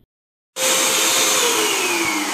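A loud whirring machine with rushing air, cutting in suddenly about half a second in after a moment of silence; near the middle its whine starts to fall in pitch as it winds down.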